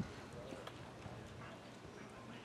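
Quiet outdoor ballfield ambience between pitches, with a few faint light clicks scattered through it and distant voices.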